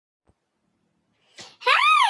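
A woman's high-pitched, excited squeal of greeting, starting about one and a half seconds in: it rises in pitch, then begins to fall away.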